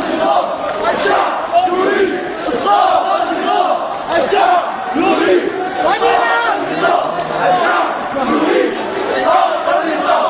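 A large crowd of street demonstrators shouting together, many voices overlapping without a break.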